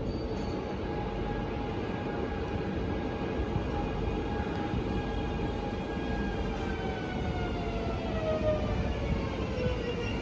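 NSB Class 73 electric multiple unit approaching along a station platform and slowing, with a steady rumble. Over the last few seconds a set of whining tones slides down in pitch as the train slows.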